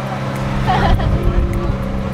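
Boat engine running with a steady low drone, with rumble underneath; a short voice sound comes about halfway through.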